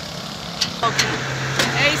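Street traffic: a vehicle engine runs with a steady low hum that starts about a second in, over general road noise, with a few sharp clicks.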